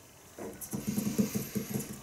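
Whiteboard markers being handled while one is swapped for another: a quick run of small clicks and rattles, about ten a second, starting about half a second in.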